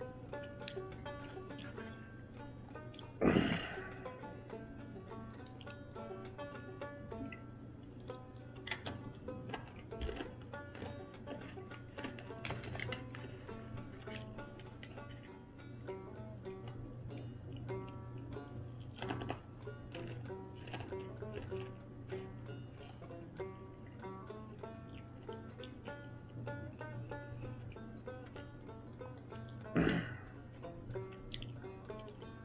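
Banjo music playing, a steady run of plucked notes over a low hum. A short, loud noise cuts through about three seconds in.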